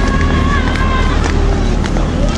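Footsteps on asphalt while walking, over a steady low rumble of wind and handling noise on the microphone.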